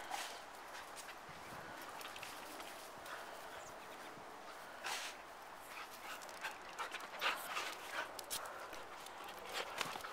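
An Australian Cattle Dog and a Norwegian Elkhound at rough play: scuffling and panting, with irregular short scrapes and clicks of claws on concrete.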